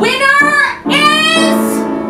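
A woman singing a musical-theatre song: a short sung phrase, then one long held note starting about a second in.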